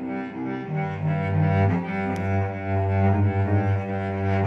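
Solo cello bowed in a slow improvisation: sustained low notes, each held about a second before the bow moves to the next.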